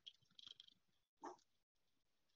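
Near silence, with a faint brief sound a little past a second in.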